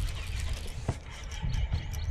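Scattered light clicks and taps from a spinning rod and reel as a jerkbait is twitched and reeled, with one sharper click about a second in, over a low rumble.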